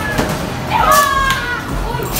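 Children cheering and yelling over a basket at an arcade basketball game. One long, high-pitched child's yell comes about a second in, with a few sharp knocks and slaps around it, over the steady din of an arcade.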